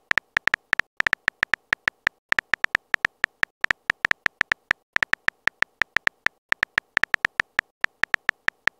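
Phone keyboard typing sound effect: a quick run of short, high clicks, about five or six a second, one for each letter of a text message being typed, with brief pauses now and then.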